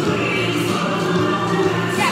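Music with singing voices, playing steadily throughout.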